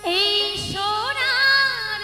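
A woman's voice enters singing a Bengali baul folk song through a microphone, opening on a high sliding note and moving in ornamented pitch glides over the band's accompaniment, with a low thud about two-thirds of a second in.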